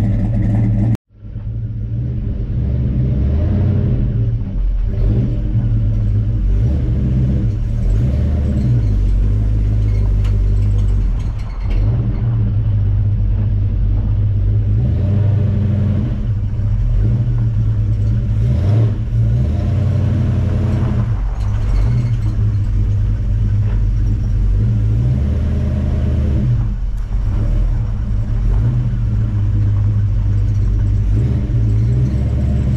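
The 396 big-block V8 of a 1968 Chevelle Super Sport running while the car is driven slowly, a steady deep rumble that rises and falls a little with the throttle. The sound cuts out suddenly for a moment about a second in.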